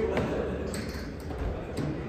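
A few light metallic clinks from a dip belt's steel chain and the hanging weight plate as the chain is handled and the plate settles.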